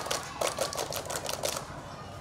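A group of children clapping their hands: a quick, irregular run of claps that thins out near the end.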